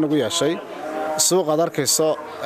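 A man speaking Somali in an interview, his voice close to the microphone.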